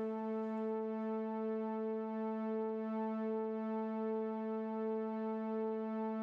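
A single synthesizer note held steadily at one pitch, with a slight regular pulsing in loudness, about two swells a second.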